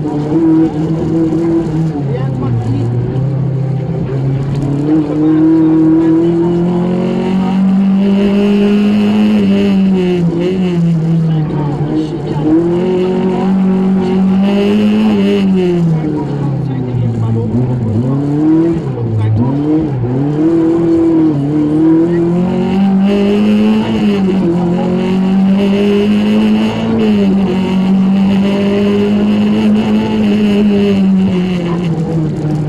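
Lancia Beta Montecarlo rally car's four-cylinder engine heard from inside the cabin, revving up and down as it pulls through the gears. About halfway through it drops and climbs several times in quick succession as the car slows and accelerates again.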